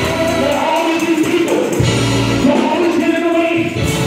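Gospel singing: a man singing into a handheld microphone over a band, with other voices joining in. A deep held bass note comes in just before the middle.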